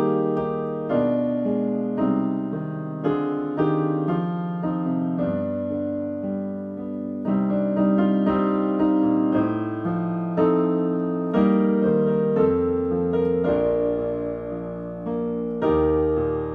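Digital piano playing a classical piece in a piano voice, melody over chords at a moderate pace, each note struck and left to ring and fade.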